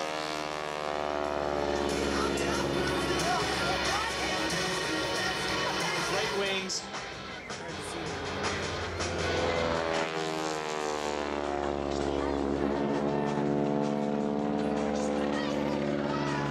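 Aerobatic biplane's piston engine and propeller as the plane flies past overhead, the engine note sweeping in pitch as it passes. It fades briefly about halfway through, then comes round again.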